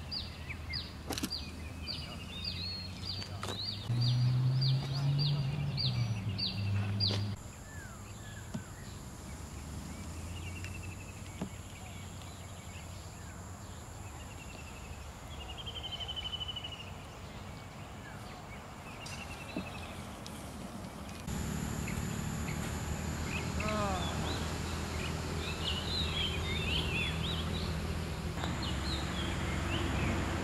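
Outdoor ambience of birds calling: short repeated chirps, later a few falling whistled calls, over a low background noise. A louder low rumble comes in for a few seconds early on, and the background changes abruptly twice.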